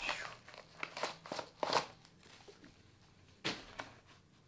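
Paper wrapping and packaging crinkling and rustling in short, irregular bursts as it is handled and unfolded by hand.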